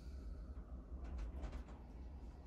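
Quiet room tone: a low steady hum with a few faint ticks in the middle.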